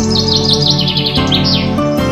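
Background music with sustained chords, overlaid by birds chirping in quick, repeated falling trills.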